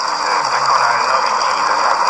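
Steady hiss of radio reception noise with faint, steady high-pitched whistle tones, heard in a gap in a talk broadcast.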